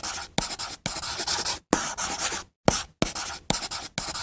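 Chalk scratching on a chalkboard as letters are written out: a quick run of short scratchy strokes, each opening with a light tap and separated by brief pauses.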